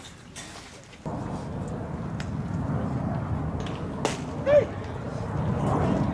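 Wind rumbling on the microphone at a baseball field, starting abruptly about a second in. About four seconds in, a single sharp pop of a pitch into the catcher's mitt, followed at once by a short, loud shouted call that rises and falls, the loudest sound.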